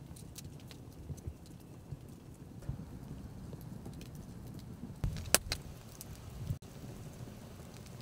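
Wood campfire crackling, with scattered sharp pops, the loudest a snap about five seconds in, over a low steady rumble.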